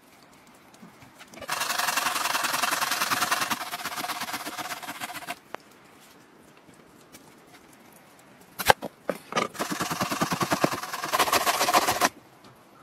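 Two stretches of quick, rasping strokes, each several seconds long, with a sharp knock just before the second. The second stretch is a red radish being grated on a metal box grater.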